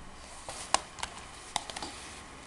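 Handling of a Blu-ray box set's packaging: about six short clicks and taps of card and plastic, the sharpest a little under a second in.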